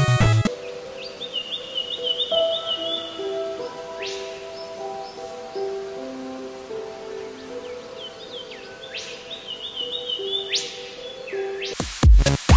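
Hummingbird chirping in quick repeated twittering runs, with a few sharp rising squeaks, over soft sustained music notes. Loud music cuts off just after the start, and another loud track begins at the very end.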